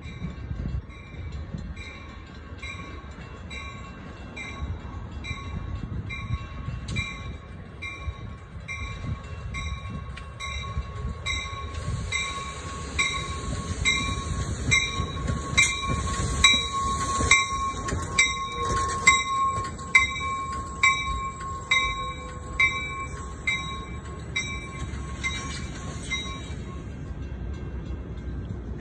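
Amtrak passenger train pulling into the station, cab car leading with an SC-44 Charger locomotive pushing at the rear. It grows louder as it nears, and from about halfway in the cars roll past with wheel clatter and a high steady squeal. A ringing beat about twice a second runs under it and stops near the end.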